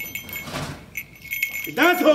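Light metallic jingling, small bits of metal shaken together, coming and going in short spells. A man's voice sounds briefly near the end.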